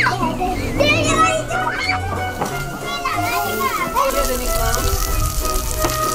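Children playing and calling out in high excited voices, over background music with a steady low bass line.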